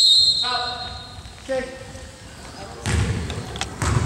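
A referee's whistle: one short, steady blast that stops about a third of a second in, blown to stop play for a substitution. Later, two thuds of a basketball bouncing on the hardwood gym floor, a second or so apart.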